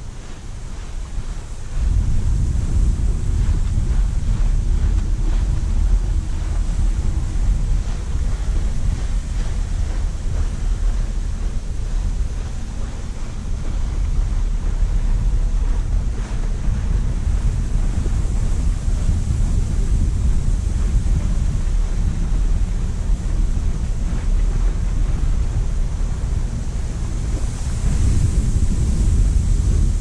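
Strong wind buffeting the camera microphone: a heavy, gusting low rumble that jumps up about two seconds in and keeps going.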